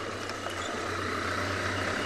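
Open safari vehicle driving along a dirt track: a steady engine hum under even wind and road noise.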